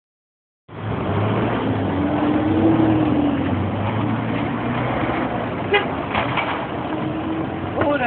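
Busy street traffic noise: vehicles running with a low, drawn-out hum that rises and falls, and passers-by's voices. A couple of sharp clacks come about six seconds in.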